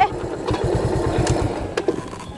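Classic motorcycle engine idling with quick, even low beats as the bike stands stopped, fading out near the end.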